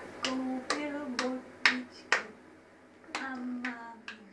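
A voice repeating a short 'pa' syllable, each starting with a sharp pop: five in quick succession, then two more about a second later.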